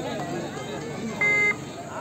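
A short, steady electronic beep lasting about a third of a second, a little past the first second, over background crowd voices.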